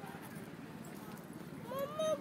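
Murmur of a crowd on a street, with a loud drawn-out call from a voice starting near the end.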